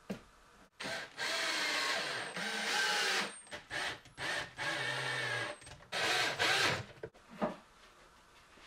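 Cordless drill driver driving screws into plywood to fix concealed-hinge mounting plates to a cabinet wall. The motor whines in a series of runs: one long run of a few seconds, then several shorter half-second spurts.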